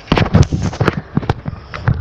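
Irregular knocks, thumps and rubbing from a handheld recording device being jostled and handled, with fingers right against the microphone; about a dozen sharp knocks in two seconds.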